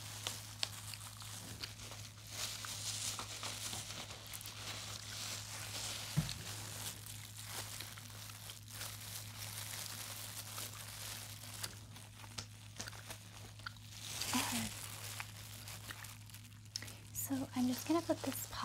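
Soft crinkling and rustling of packaging handled close to the microphone, with scattered small clicks, as the tooth polish is got out. A steady low electrical hum runs underneath.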